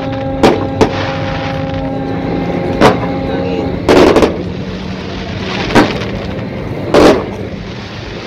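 Aerial fireworks shells bursting: about six sharp bangs, the loudest and longest about four seconds in and about seven seconds in. A steady low tone is held through the first half.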